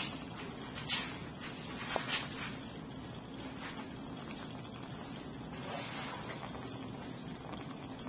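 Laboratory gas burner's flame hissing steadily under a paper cup of water, with a few sharp ticks in the first two seconds.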